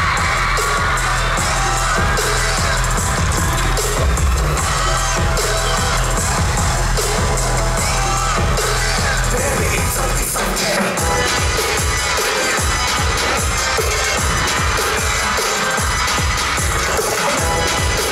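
Loud pop dance track with a heavy bass beat in an instrumental section without singing. About ten seconds in, the sustained low bass drops out and a choppier, pulsing beat takes over.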